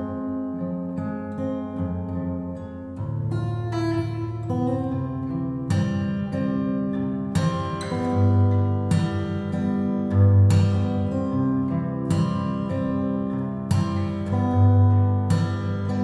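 Steel-string acoustic guitar fingerpicked solo, with low bass notes ringing under a plucked melody line.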